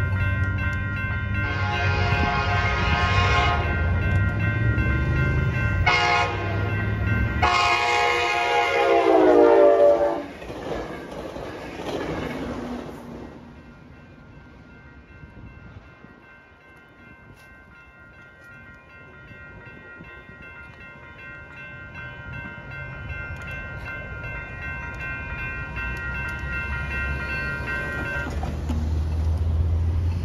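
NCTD COASTER commuter train sounding its horn for the grade crossing in three blasts, short in the middle, with the last one dropping in pitch as the train passes, over the diesel rumble of the approach. A grade-crossing warning bell rings steadily and cuts off near the end as the gates lift.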